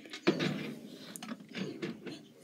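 A few soft clicks and knocks of things being handled close to the microphone, with a brief low mutter about a quarter second in.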